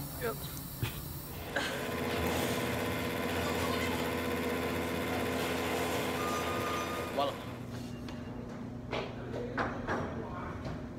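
Microwave oven heating a cup of instant noodles: a steady hum that starts with a click about a second and a half in and stops with a click about seven seconds in.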